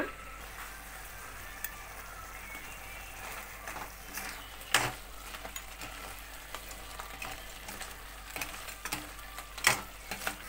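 Crab masala gravy sizzling in a steel pan, with a few sharp clinks of metal utensils against steel, the loudest about five seconds in.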